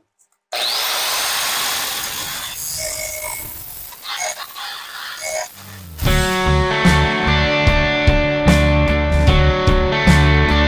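Handheld angle grinder spinning up with a rising whine and grinding the sharp points off the robot's metal frame for about five seconds. Rock music with guitar takes over about six seconds in.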